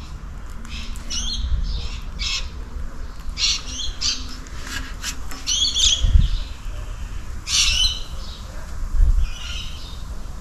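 Small birds chirping in short repeated calls, one every second or so. A low rumble swells about six seconds in and again near the end.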